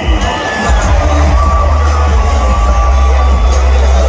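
Stadium PA music with a steady heavy bass over a cheering ballpark crowd.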